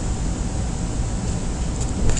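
Steady background hiss with a low hum underneath, even throughout. Melting the solder onto the board makes no distinct sound of its own.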